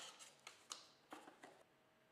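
Faint handling noise: a few soft ticks and rustles as a paper instruction leaflet and a plastic carrying case are moved about on a hard surface, dying away near the end.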